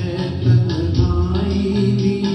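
A man singing a Hindi film song into a handheld microphone over recorded backing music, his voice wavering on a held note about a second in, with a steady high ticking beat and sustained low notes beneath.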